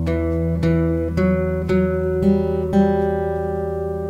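Acoustic guitar fingerpicked slowly. The open low E string rings under single notes plucked on the fourth string at the second and fourth frets and then the open third string, about two notes a second: the opening E minor figure of the picking pattern.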